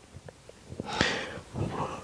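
A man breathing close on a handheld microphone in a pause, with a sharp sniff about a second in.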